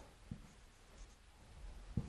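Faint, short strokes of a dry-erase marker writing letters on a whiteboard.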